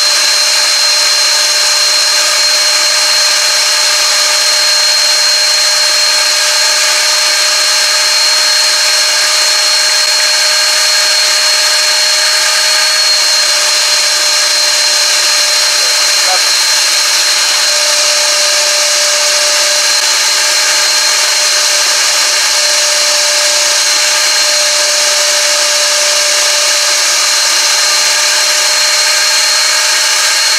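VEVOR 6.5-gallon wet/dry shop vacuum with a 12-amp motor running steadily with a high whine, its hose and swivel brush head drawing up dry leaves and pine needles.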